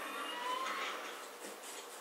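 Quiet room noise with a faint, slowly rising tone in the first half.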